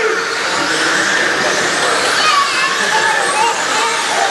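Pack of radio-controlled dirt-oval race cars running laps together, their motors making a steady whine whose pitch rises and falls as the cars go through the corners.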